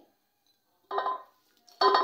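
A single short ringing clink about a second in, from a plate knocking against a steel cooking pot as sliced onions are tipped in; the rest is silent until a voice starts near the end.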